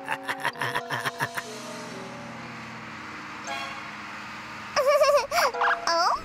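Cartoon soundtrack: background music with a quick run of clicks and knocks in the first second and a half, then a loud wavering tone about five seconds in.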